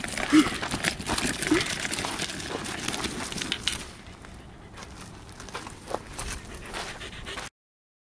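A Pembroke Welsh Corgi sitting in a pet cart whimpering, two short whines in the first two seconds, restless at being kept in the cart. Crunching and clicking on gravel runs under it, and the sound cuts off suddenly about seven and a half seconds in.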